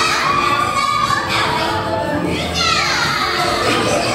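An audience of children shouting and calling out, their high voices overlapping, with one long falling call about two and a half seconds in.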